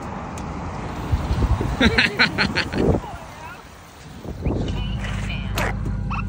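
A car engine idling steadily, with a short burst of laughter about two seconds in.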